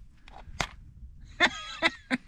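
Old matches being struck on a matchbox striker: a sharp scratch about half a second in, then a couple of rougher scrapes in the second half, with a brief wavering hiss between them.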